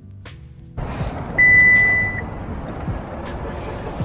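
A single steady high-pitched electronic beep, under a second long, over outdoor background noise. Background music cuts out just before it.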